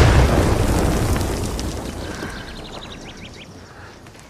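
A grenade explosion: a sudden loud blast that fades away over the next three seconds or so, with faint ticking near the end.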